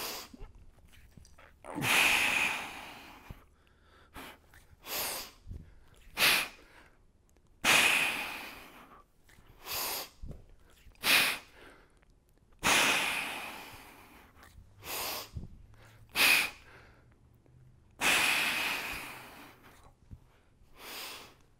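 A man breathing hard and forcefully through heavy kettlebell clean-and-press reps with a 28 kg kettlebell. A long hissing breath comes about every five seconds, with short sharp breaths between, as he braces his core under the weight.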